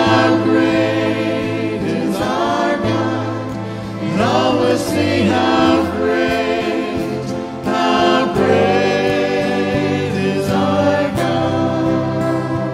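A church praise team singing a worship anthem together, the voices gliding between notes over held chords and a steady bass accompaniment.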